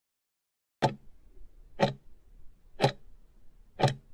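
Countdown-timer clock ticks: sharp ticks once a second, starting about a second in, four in all.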